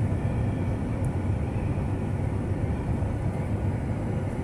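Steady in-cabin driving noise of a 2023 Jeep Wrangler Rubicon under way, a low hum from its tyres on the road and its 3.6-litre V6.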